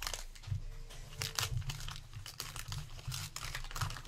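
Wax paper wrapper of a 1981 O-Pee-Chee baseball card pack being torn open and crinkled by hand: a run of irregular crackles, over a low steady hum.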